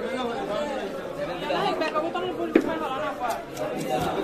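Several people talking at once in background chatter, with one sharp knock about two and a half seconds in.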